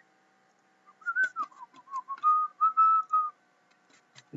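A person whistling a short tune of several wavering notes for about two seconds, starting about a second in, with a few faint clicks.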